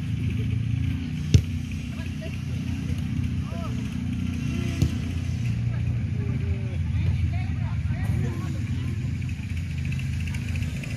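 Faint shouts and calls from football players and spectators over a steady low rumble. A football is kicked with a sharp thud about a second in, and a smaller knock comes near the middle.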